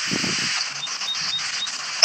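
Steady hiss of a poor phone line, with a faint low rumble in the first half second and four tiny high blips spaced about a third of a second apart. The speech has dropped out, leaving only the line noise.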